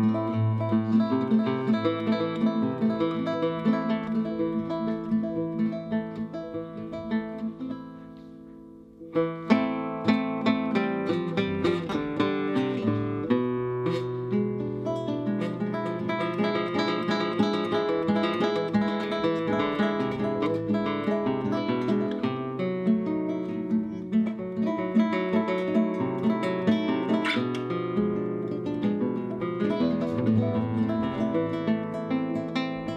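Solo flamenco guitar, played as a csárdás-style piece of the player's own arranging: plucked melody and strummed chords. About eight seconds in, a chord rings out and fades, and then quick, loud playing resumes.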